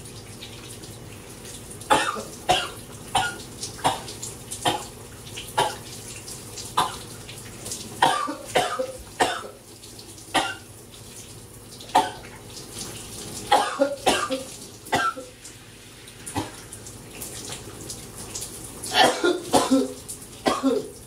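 A man coughing again and again in short fits from a bug in his throat, over the steady hiss of a running shower. The coughs start about two seconds in, come irregularly, and bunch together near the end.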